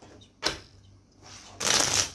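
Tarot cards being riffle-shuffled on a wooden desk: a single sharp tap about half a second in, then a loud, dense riffle of cards near the end.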